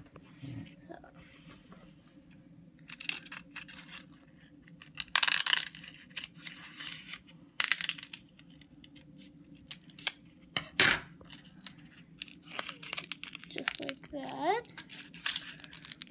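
Scissors cutting through a dried, dead pitcher plant pitcher: a series of crisp snips with crackling and tearing of the papery leaf, the loudest about five and eleven seconds in.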